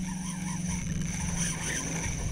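A steady low hum under an even hiss of wind and water, fading about one and a half seconds in.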